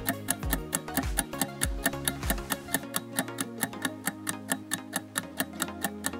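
Quiz countdown-timer music: a steady fast ticking, about four ticks a second, over a sustained bass line, with a low thudding beat that drops out about halfway through.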